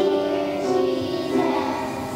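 A group of young children singing a song together in unison, holding each note before moving to the next.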